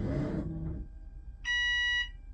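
Bus dashboard warning buzzer sounding one steady electronic beep about half a second long near the end, as the instrument cluster runs its power-on system checks. A brief hiss comes before it at the start.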